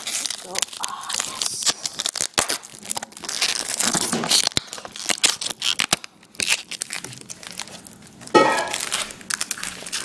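Packaging tape being ripped off and paper and plastic wrapping crinkling, a dense run of rustles, tears and small crackles.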